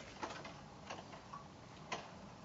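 Faint clicks and light taps from hands handling fabric at a sewing machine as it is set under the presser foot: a sharp click at the very start, then a few scattered ticks, one more just before the end. The machine is not yet stitching.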